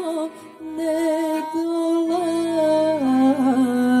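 A slow song played on piano accordion, with a woman singing long held notes. The melody steps down in pitch about three seconds in.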